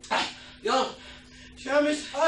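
A man's short whimpering cries of pain, three in two seconds, each rising then falling in pitch.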